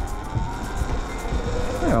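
Sur Ron Light Bee electric dirt bike riding along a gravel track: a faint, steady electric-motor whine over low wind rumble and tyre noise on the gravel.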